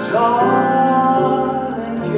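A male singer with instrumental accompaniment. His voice slides up into a note that he holds for about a second before the melody moves on.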